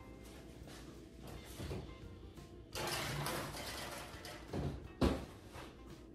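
A baking sheet slides into a kitchen oven with about a second and a half of scraping, then a knock, and the oven door shuts with a thump about five seconds in.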